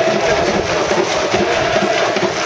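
A football supporters' section singing a chant together over a steady, evenly repeating drum beat.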